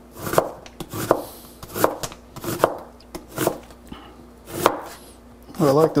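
A dull chef's knife slicing an onion on a cutting board: slow, uneven strokes, about one a second, each ending in a knock on the board.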